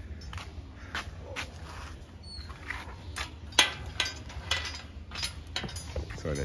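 Irregular clicks and knocks of a rusty steel gate being handled and opened, the loudest knock about three and a half seconds in.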